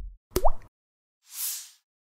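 Cartoon sound effects for an animated logo: a short pop with a quick upward-sliding pitch, then about a second later a soft whoosh that swells and fades.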